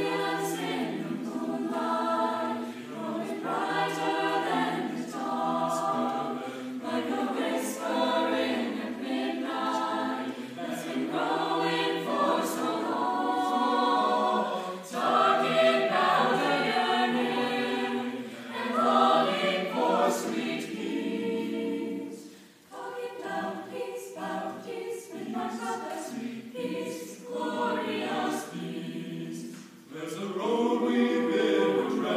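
Mixed youth choir of boys' and girls' voices singing in parts, in phrases that swell and break off, with a brief pause about two-thirds of the way through.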